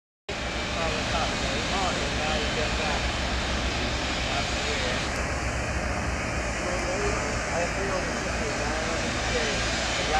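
Steady shipyard background noise: a continuous low rumble and hiss, with faint distant voices now and then.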